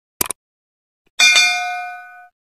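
Subscribe-animation sound effects: a quick mouse click, then a bright bell ding about a second later that rings and fades away.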